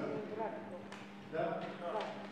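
Speech: people talking in a meeting, with a man asking "Da?" a little past halfway, over a steady low hum and one sharp click just before he speaks.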